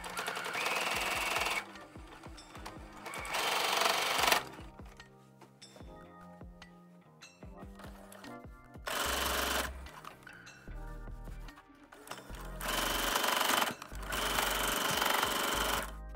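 Electric sewing machine stitching a seam through two layers of muslin in five short runs of about a second each, stopping between them as the fabric is guided.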